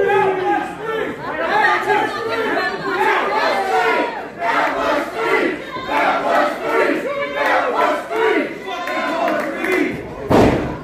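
A small crowd of wrestling spectators shouting and yelling, many voices overlapping without a break.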